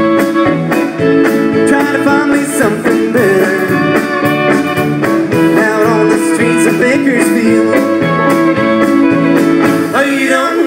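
Country rock band playing live: guitar over a steady drum beat, an instrumental passage between sung lines.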